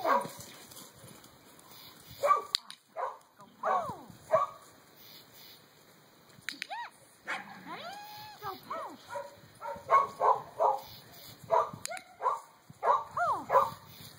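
Border Collie barking and whining in short, excited calls that rise and fall in pitch, coming in clusters throughout.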